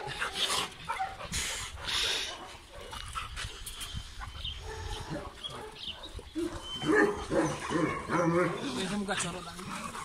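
Several dogs vocalizing as they play, wrestle and jump up at a person.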